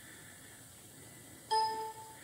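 A single short electronic beep from a Hunter wheel alignment console about one and a half seconds in, during a caster sweep while the wheels are steered to the positions shown on the screen. Before it, only faint room tone.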